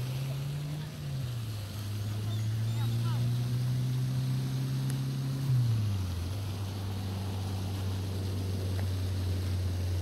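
A low engine drone runs steadily, its pitch dropping about a second in, rising again, then dropping once more at about five and a half seconds, as an engine changes speed.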